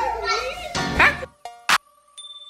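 Lively voices talking over each other, cut off abruptly a little over a second in. Then outro music starts: a steady held tone and one sharp percussive hit.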